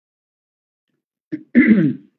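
Over a second of silence, then a single short cough near the end, with a small click just before it.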